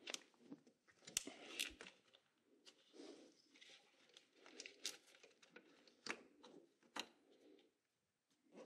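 Faint handling sounds: several short plastic clicks and rustling as the electronic throttle body's wiring connector is pushed back into place and an oscilloscope probe is attached to it.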